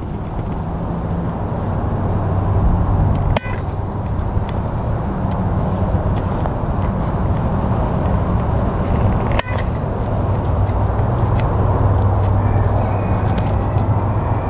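A motor vehicle's engine running nearby: a steady low drone with a rushing noise over it.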